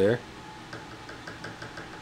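Faint, quick run of light ticks as a hand handles the front cantilever suspension of an RC drift car chassis.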